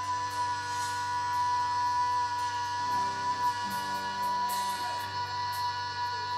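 Live rock band with electric guitars playing, one high note held steady throughout while the lower notes shift about halfway through.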